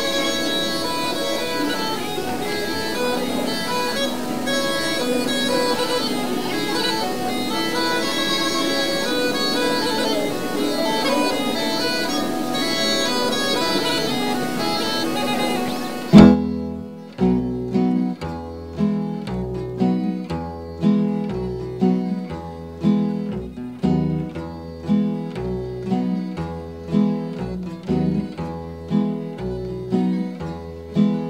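Croatian tamburica orchestra playing a lively kolo, many plucked tamburicas in quick tremolo. About sixteen seconds in the full band drops away and a bagpipe (gajde) plays over a steady pulsing bass beat.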